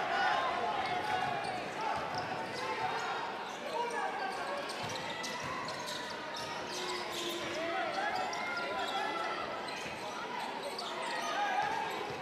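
Basketball arena sound: a crowd murmuring with scattered voices and shouts, and a basketball being dribbled on the hardwood court, heard as repeated short bounces.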